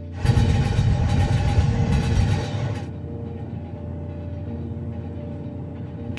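A train running on the rails: a loud rumble that drops to a quieter, steadier rumble about three seconds in, under held musical notes.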